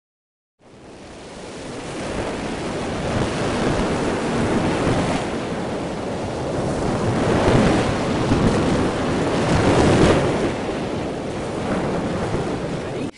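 Ocean surf washing onto a beach, recorded through a camera's built-in microphone and distorted. It fades in about half a second in, then swells louder twice in the second half.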